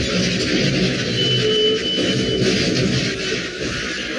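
Loud, dense rumbling noise of a helicopter action scene, mixed with a dramatic music score, with a brief thin high tone about a second in.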